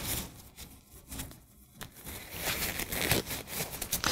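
Nitrile exam gloves being pulled onto the hands: light rustling and stretching of the glove material, dipping quieter about a second in and picking up again in the second half.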